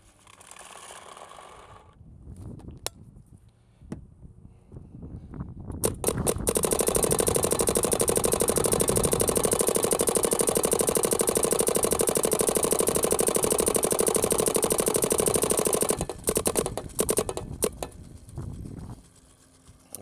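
A Planet Eclipse Geo 4 paintball marker firing in ramping mode on compressed air: a few single shots, then a fast continuous string of shots for about ten seconds, then a handful of scattered shots near the end. At the very start there is a short rattle of paintballs being poured into the loader.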